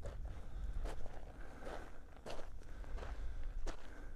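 Footsteps of a person walking over gravelly, stony ground and dry grass, about six even steps roughly 0.7 s apart.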